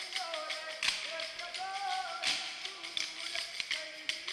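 Kolkali stick dance: short wooden sticks clacking sharply against each other, the loudest strikes about one, two and a quarter, and three seconds in, over a sung vocal line accompanying the dance.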